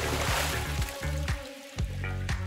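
A show's intro sting: a water-splash sound effect fading over about the first second, over music with deep bass notes and sharp drum hits.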